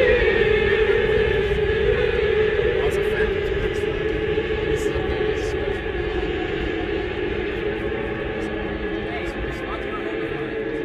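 A car's engine and road rumble heard from inside the cabin: a steady drone over a low rumble that eases off slightly near the end as the car slows toward a junction.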